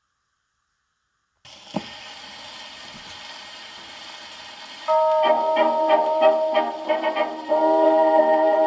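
Wind-up Victrola phonograph playing a shellac 78 rpm record. About a second and a half in, surface hiss starts with a click as the needle meets the groove. About five seconds in, a 1920s dance orchestra begins a fox trot with a run of short repeated chords, then goes on to held chords.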